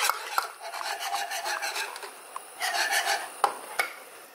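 Hand whisk stirring a thin chocolate liquid in a nonstick pot: uneven swishing and scraping strokes against the pot, with a few light clicks.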